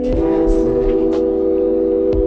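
Backing music of the song holding one sustained chord of several steady tones, with a few short percussive ticks over it and no singing.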